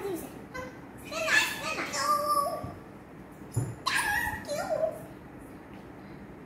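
Young girls' high-pitched voices in two short playful stretches of vocal sounds that rise and fall in pitch, with a soft knock just before the second.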